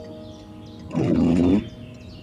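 Windscreen wiper blade dragging across the wet glass, giving a loud, low juddering rasp for just over half a second in the middle, over background music.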